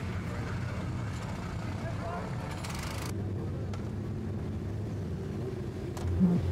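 Racing motorcycle engines idling on the grid, a steady low hum, with people talking around them; the sound thins out a little about halfway through.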